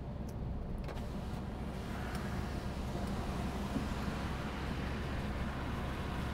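Steady engine and tyre noise of a Peugeot car heard from inside its cabin while driving at moderate speed, about 50 km/h.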